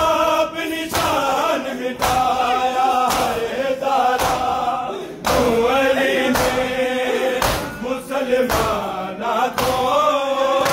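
A crowd of men chanting a noha together, with sharp slaps of hands on bare chests (matam) beating in time about once a second.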